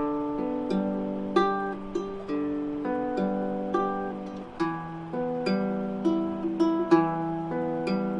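Baritone ukulele played as an instrumental intro, its chords plucked one note at a time, about two notes a second, with the notes ringing over each other.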